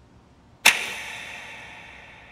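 A record player's metal lever being pushed: one sharp mechanical click about two-thirds of a second in, ringing out and fading away over more than a second, over a faint low rumble.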